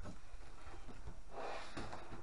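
Large cardboard box being handled and set down, with a brief scraping rustle of cardboard about one and a half seconds in.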